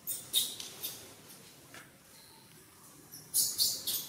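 Newborn pig-tailed macaque squeaking: short, high-pitched squeaks, a few in the first second and a quick run of them near the end as the mother handles it.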